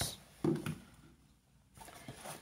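Hands handling a cardboard camera box and its inner packaging: a few soft knocks and rustles in the first second, a quiet moment, then faint handling again near the end.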